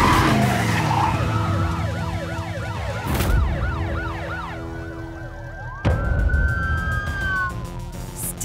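Cartoon police sirens wailing in quick rises and falls, about three a second, over dramatic background music, after a car engine revs as the accelerator is floored at the start. Near the end a long high squeal slides down in pitch.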